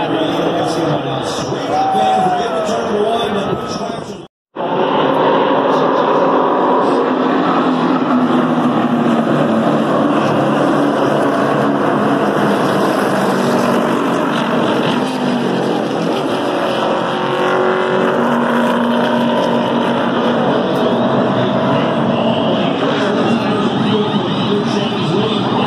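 NASCAR Cup Series stock cars' V8 engines running as the field circles the track below, a loud steady sound from the grandstand. The sound cuts out for a moment about four seconds in.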